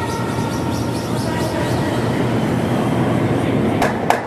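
A granite curling stone running down pebbled ice with a steady low rumble, while two sweepers brush the ice just ahead of it in quick strokes. Two sharp clicks come near the end.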